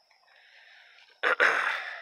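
A man clearing his throat: a short catch followed by a longer raspy burst, about a second in.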